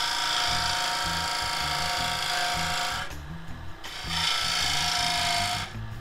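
Bowl gouge cutting into a spinning blank of very hard river sheoak on a wood lathe: a steady, high-pitched cutting whine over the running lathe. It breaks off briefly about three seconds in and again near the end.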